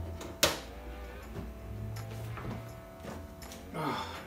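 A cured silicone mask being worked free of its mould, with a single sharp knock about half a second in, over faint background music.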